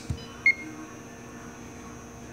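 A single short electronic beep about half a second in from the press brake control's touchscreen as Enter is pressed, accepting the 48-inch length entry. A faint steady hum continues underneath.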